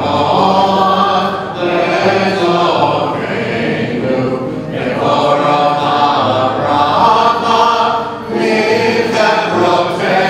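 A congregation singing a healing prayer song together, in sustained phrases of about three seconds with short breaks between them.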